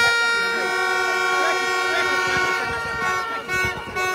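A horn blown close by in one long, loud, steady note that stops about three and a half seconds in, over the chatter of a crowd.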